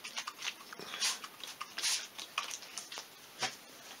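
Trigger spray bottle of water squirting in several short hissing bursts, about a second apart.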